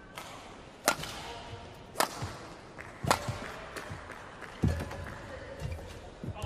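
Badminton rally: three sharp cracks of racket strings striking the shuttlecock, about a second apart, followed by heavy thuds of players' feet landing on the court, the loudest thud a little before the end.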